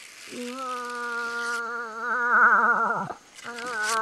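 A moose call: a long nasal moan of about three seconds that wavers in pitch in its second half and slides down at the end. A shorter second call follows near the end, with a hiss over the first second and a half.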